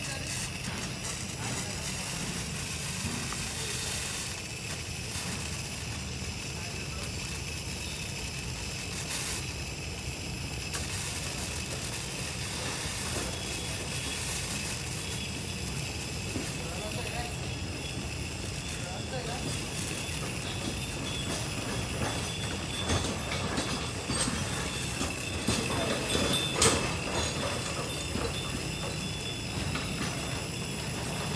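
Butane gas burner of a handheld thermal fogger running steadily as the machine warms up before fogging: an even rumble and hiss with a faint high whistle. A few sharp clicks come in the last several seconds.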